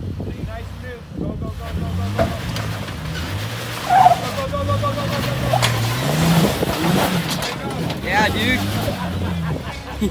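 Jeep Wrangler engine revving up and down under load as it crawls up a steep sandstone ledge, its pitch rising and falling. There is a sharp loud knock about four seconds in.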